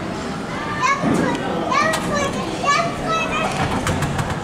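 Children's voices: high-pitched calls and chatter, repeated from about a second in.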